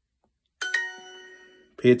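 Duolingo's correct-answer chime: two quick bell-like notes about half a second in, ringing out over about a second, marking the translation as correct. A man starts speaking near the end.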